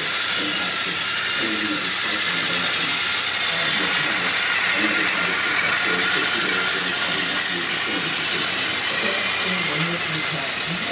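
Toy TrackMaster train's battery motor whirring steadily as the engine runs along plastic track, heard as an even hiss-like whir, with adults talking in the background.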